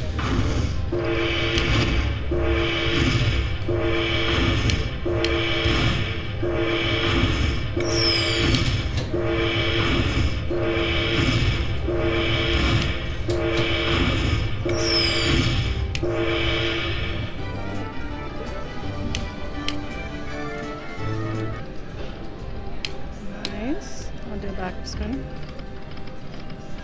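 Dragon Link slot machine playing its bonus win music: a short chiming phrase repeats about once a second while the bonus coin values are collected and the win total counts up, with a high falling whistle twice. The tune stops about two-thirds of the way through, leaving the quieter jingles and hubbub of other machines in a casino.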